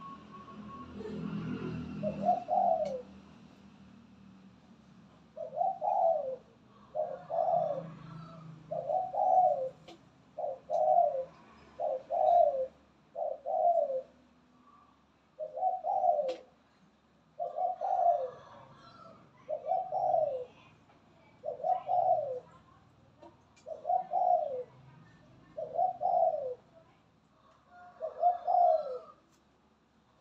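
A moulting spotted dove cooing over and over, a short coo phrase repeated about every second and a half.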